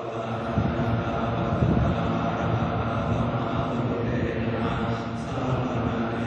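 Thai Buddhist monks chanting in Pali: a steady, low-pitched recitation that runs on without pause.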